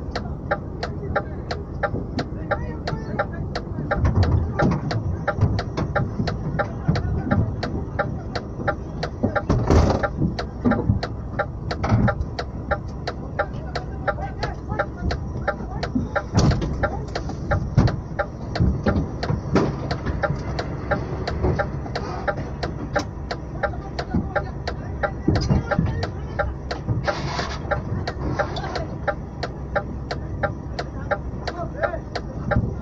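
Steady low engine rumble of a stationary lorry heard from the cab, with an even ticking of about two to three a second throughout. Men's voices call out now and then, loudest around ten seconds in and near the end.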